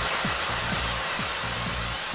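House club mix in a breakdown: a wide white-noise wash slowly fading, over a kick drum about twice a second and a steady bassline.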